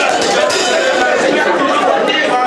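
A congregation praying aloud all at once: many overlapping voices at a steady level, with no single voice standing out.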